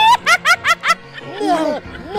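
A woman's high-pitched cackling laugh: a quick run of about five sharp 'ha' bursts in the first second, then slower rising-and-falling laughing sounds.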